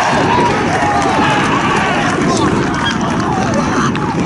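Young footballers and substitutes shouting and cheering all at once, many overlapping voices, celebrating a goal.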